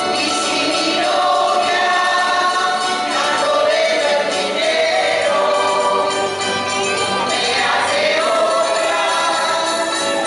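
Live folk ensemble playing a bolero: guitars and other plucked strings accompany a group of voices singing together.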